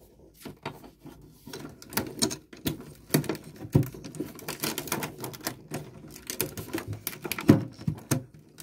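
Manual hand-crank shredder's cutters chewing through a sheet of plastic: a dense run of irregular crunching clicks, with one loud crack about seven and a half seconds in.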